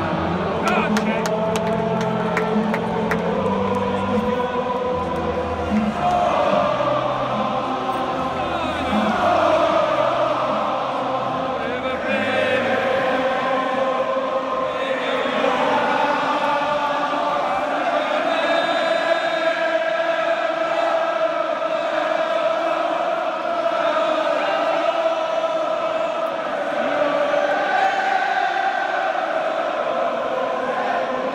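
Football stadium crowd singing a chant in unison, thousands of voices on long held notes.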